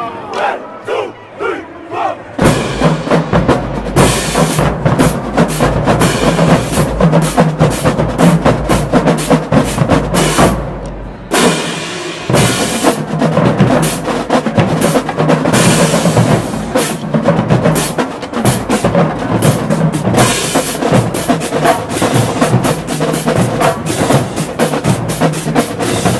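Marching band drumline playing a cadence on snare drums and crash cymbals. It opens with a few scattered hits, comes in full and loud about two seconds in, breaks off briefly about eleven seconds in and then picks back up.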